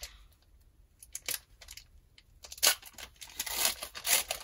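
Foil wrapper of a Pokémon booster pack crinkling and tearing open by hand, in scattered sharp rustles that grow denser in the second half.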